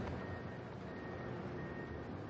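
Faint, steady background noise with a thin, high steady tone running through it, and no distinct events.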